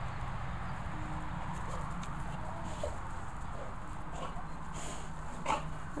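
An old Labrador retriever gives a few faint short whines, then a louder, sharper whining yelp near the end, over a steady low rumble. It is her begging, 'shouting' call for treats.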